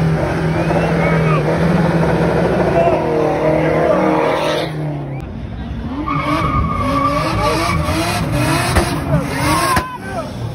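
A car's engine held at high revs for about four and a half seconds. After a short break, tyres squeal as a car spins its wheels past the crowd, with people shouting over it.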